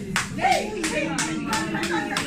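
Hands clapping in a steady rhythm, about three to four claps a second, with a voice and music underneath.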